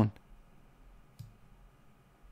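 A couple of faint, short computer mouse clicks, the clearer one about a second in, against a quiet room.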